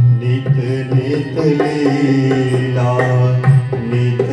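Devotional music: a harmonium plays a moving melody over a held low drone, with a two-headed barrel drum struck by hand in a steady rhythm.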